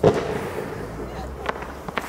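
Fireworks shells bursting: one loud bang at the start that rumbles away, then two sharper cracks near the end.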